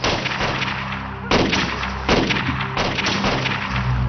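Gunshots in a firefight, about four sharp reports a second or less apart, each trailing off in a long echo.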